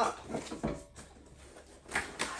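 Cardboard product box being handled and set down on a tabletop: faint scuffs and clicks, then a thump near the end as it lands.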